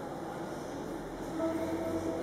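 Church organ holding sustained notes in the reverberant nave, with a low bass note entering about a second in and higher notes swelling near the end.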